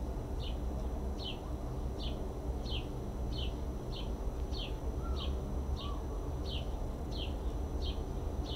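A bird repeating a short, falling chirp over and over, about one and a half times a second, over a low steady hum.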